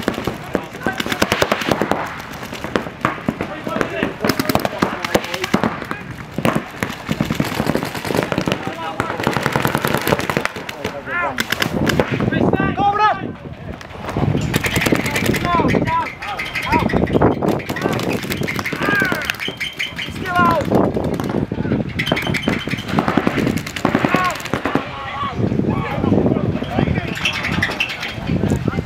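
Paintball markers firing in rapid, continuous strings of shots, several guns at once.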